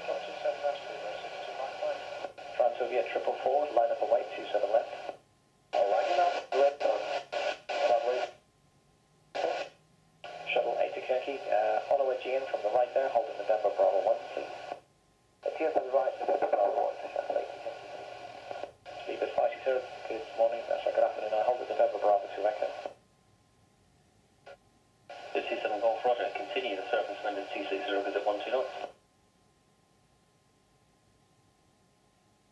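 Air traffic control radio: controller and pilot voices heard through a radio receiver, sounding thin and narrow. They come in about six transmissions broken by short silences.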